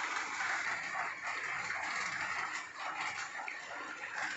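Hot charcoal in a small steel cup sizzling with a steady hiss as oil on the coals burns off into smoke.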